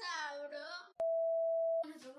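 A child's voice, then about a second in a single steady electronic beep lasting just under a second that cuts off suddenly.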